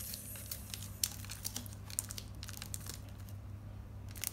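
Crinkling and scattered light clicks of adhesive tape and craft materials being handled as a strip of tape is pressed down to hold a pipe-cleaner handle inside a craft-stick basket.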